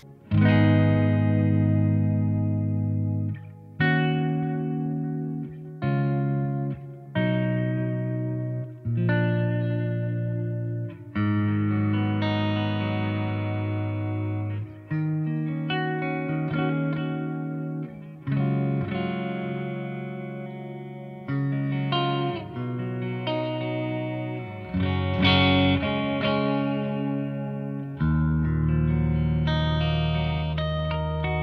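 Chapman ML1 Modern Standard electric guitar with Seymour Duncan Pegasus (bridge) and Sentient (neck) humbuckers, played through a Victory Kraken amp's clean channel with a little reverb and delay. Chords are struck one every second or two and left to ring out as the pickup positions are switched through, showing the clean pickup tones.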